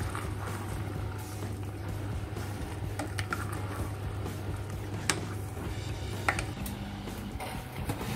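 Chopped vegetables being stirred into a thick tomato sauce in a stainless steel pot with a spatula, with a few sharp clicks of the spatula against the pot, over a steady low hum.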